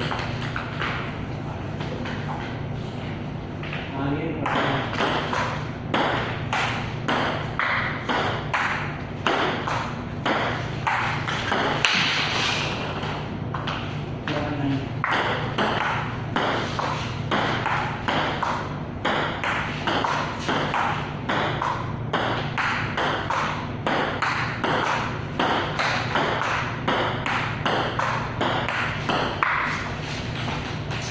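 Table tennis balls clicking off paddles and the table in rallies, a quick run of sharp pings about two to three a second.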